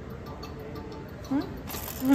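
Steady low background hum of an airport terminal, with a brief voice sound about two-thirds of the way through and speech starting near the end.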